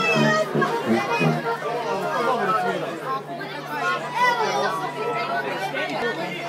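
Many people talking at once, an overlapping chatter of voices, with a low steady tone held underneath from about a second and a half in.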